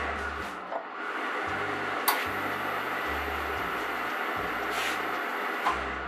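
Steam iron hissing steadily, the hiss dipping briefly just before a second in, with a low hum that starts and stops several times and a single sharp click about two seconds in.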